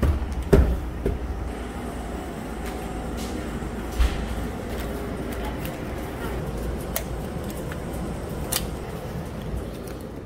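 Footsteps on wooden exterior stairs in the first second, then walking over a steady low background rumble. A single knock comes about four seconds in, and sharp clicks follow later as a hotel room door with a lever handle is unlocked and opened.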